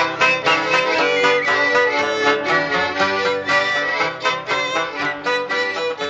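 Instrumental German folk music from a vinyl record, without singing: held melody notes over a quick, evenly plucked string accompaniment, easing slightly in loudness near the end.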